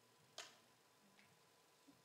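Near silence: room tone, with one faint, sharp click about half a second in and a fainter tick later.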